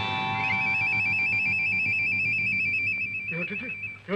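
A ringtone-like electronic sound effect: a chord of steady high tones with a rapid, even warbling trill above them, holding for about four seconds before it stops. A man's voice cuts in near the end.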